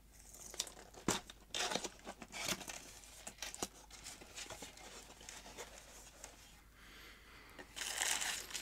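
A cardboard product box being opened by hand: the lid flap scraping and the packing rustling and crinkling, with scattered light clicks and taps, as the wrapped radio is slid out.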